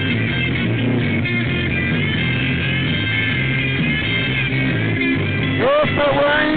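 Rock band playing an instrumental break, with guitar over a steady bass line and beat. A singing voice comes in near the end.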